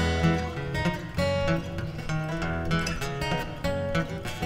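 Solo acoustic guitar playing the instrumental introduction to an old ragtime-era song, plucked chords over changing bass notes.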